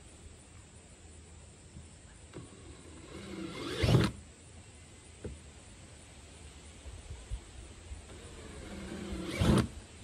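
Cordless drill with a 3/8-inch bit running in two short bursts, about three seconds in and again near the end, each rising for about a second before stopping, as it bores holes through the kayak's plastic hull.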